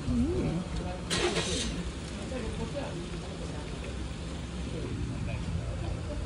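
Outdoor street sound with people's voices over a steady low engine hum from a nearby vehicle, and a short hiss about a second in.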